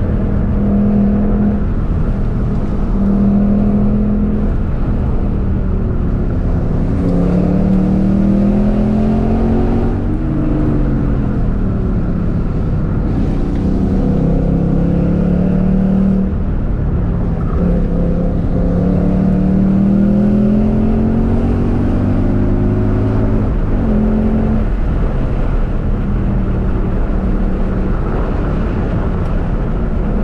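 Ford Mustang engine heard from inside the cabin, accelerating hard: its pitch climbs for a few seconds and then drops at each gear change, several times over, over steady road noise.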